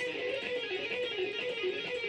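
Electric guitar playing a rapid legato run of hammer-ons and pull-offs, a repeating four-note sequence, the notes flowing evenly into one another.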